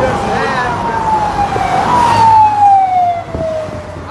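Siren of a convoy escort vehicle wailing in two long downward glides, the second starting about two seconds in, over the noise of passing vehicles.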